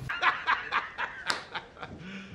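A man laughing hard in short 'ha-ha' bursts, about four a second, fading toward the end: J.K. Simmons's laugh as J. Jonah Jameson, the Spider-Man meme clip edited in.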